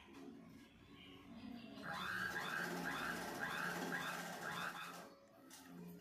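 Sewing machine stitching a zip onto a nighty: it runs for about three seconds in a quick, even rhythm, starting about two seconds in and stopping shortly before the end.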